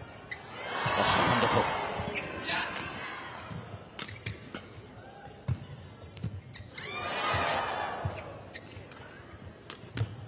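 Badminton rally in an indoor arena: rackets strike the shuttlecock in sharp, separate cracks, roughly one a second, echoing in the hall. Crowd noise swells twice, about a second in and again around seven seconds.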